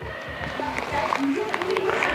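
Indistinct background voices over room noise.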